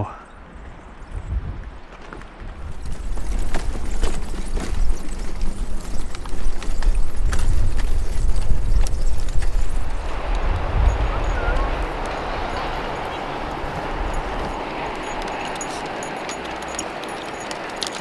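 Bicycle clattering and rattling over the rough wooden plank deck of an old trestle bridge, with many quick knocks over a low rumble. After about ten seconds this gives way to a steadier hiss.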